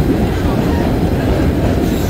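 Vintage New York City subway train running at speed through a tunnel: a loud, steady rumble of wheels and cars on the track.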